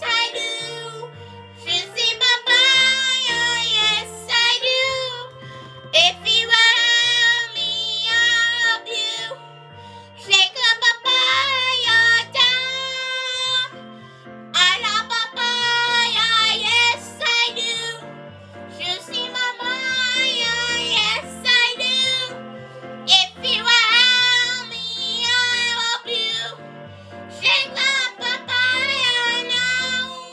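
A song playing, with high sung vocals with vibrato over a backing track with a stepping bass line, and a child's voice singing along in phrases with short breaks between them.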